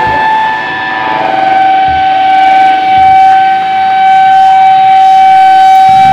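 Electric guitar feedback from the amplifier: one loud, steady high tone held on its own with the drums and rest of the band stopped. It starts a little higher, drops to a slightly lower pitch about a second in and swells louder over the next two seconds.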